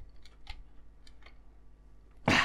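A few faint, light clicks as a screwdriver works the screws holding the engine to a scale model car's chassis, the clearest about half a second in.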